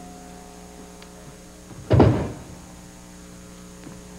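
A steady low electrical hum, with one loud dull thud about halfway through.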